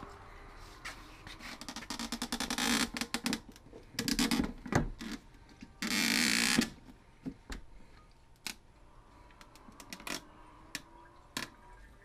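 Handling noises at a car's fuel filler: close rapid plastic clicks, rattles and rustles as a plastic fuel jug and the filler are worked. The busiest stretches come in three spells in the first seven seconds, then only scattered single clicks.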